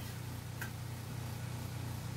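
Rollimat pivot polisher running with a steady low hum while it polishes a clock pivot.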